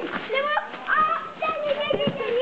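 Children's high-pitched voices chattering and calling out over one another, indistinct, with a few brief clicks.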